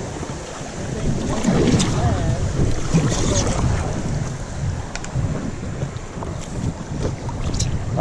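Wind buffeting the microphone over river water splashing against a paddle board, with a few sharp knocks from the paddle and board.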